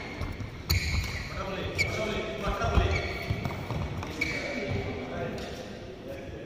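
Badminton doubles rally: a few sharp racket strikes on the shuttlecock, the first two about a second apart and another a few seconds later, ringing in a large hall, with footfalls on the court and players' voices.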